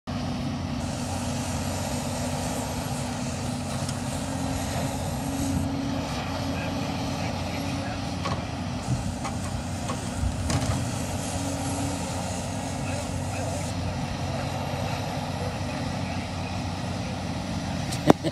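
A Cat 568 log loader's diesel engine running steadily as the grapple works a log pile, with a few short knocks of wood on wood around the middle.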